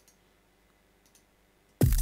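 Near silence with a few faint clicks, then just before the end a drum and bass track comes back in loud: a kick drum with a steeply falling pitch over a heavy sub bass and bright percussion.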